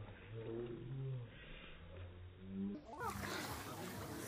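A deep, low-pitched growling sound, several drawn-out roar-like calls in a row, with a narrower sound than the rest of the track. About three seconds in it gives way to children's voices and pool splashing.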